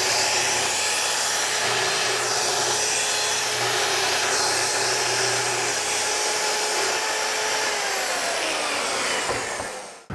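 Festool track saw running and ripping through a wooden panel along its guide rail, a steady whine under the noise of the cut. Near the end the motor's pitch falls as it winds down after the cut.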